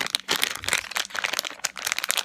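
Plastic blind-bag packet holding a squishy toy crinkling as it is handled, a dense run of rapid, irregular crackles.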